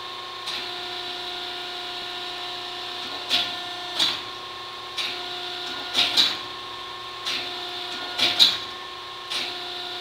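Industrial plastics-processing machine running with a steady whine of several tones, its pitch stepping down and back up several times. Sharp clacks and knocks, some in quick pairs, come roughly once a second.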